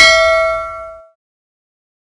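Notification-bell 'ding' sound effect of a subscribe animation, a bright metallic chime with several ringing tones that fades away about a second in.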